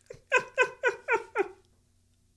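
A man laughing hard, a run of about five quick 'ha's, each falling in pitch, that stops about a second and a half in.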